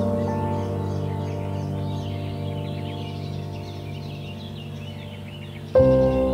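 Slow, soft instrumental background music: held keyboard notes slowly fade, then a new chord is struck loudly near the end. Faint bird chirps sound high above it throughout.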